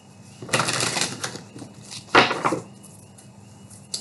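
A deck of oracle cards being shuffled by hand: a rustling run of cards slipping against each other, then a second, shorter flick of the cards a little after it.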